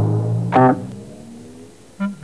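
Cartoon score music: a low plucked bass note rings and fades out, with one short higher note about half a second in.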